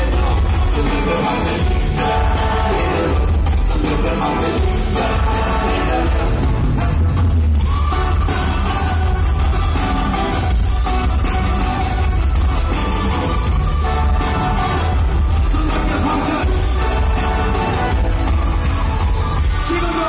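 Live pop band playing loud through an arena sound system, heavy bass and drums under electric guitar and keyboards.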